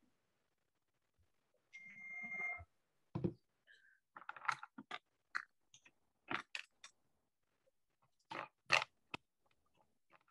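A series of short, irregularly spaced clicks and knocks, with a brief high squeak about two seconds in.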